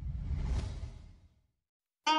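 A whoosh sound effect with a deep rumble under it, swelling to a peak about half a second in and dying away by about a second and a half.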